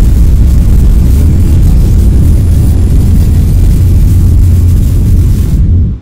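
Loud intro sound effect for the electric-bolt logo animation: a deep, steady rumble with a crackling hiss on top, cutting off suddenly just before the end.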